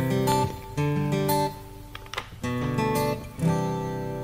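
Background music: an acoustic guitar playing chords and short melodic phrases.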